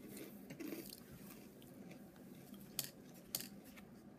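Quiet room with a few faint, sharp clicks from tortilla chips being handled.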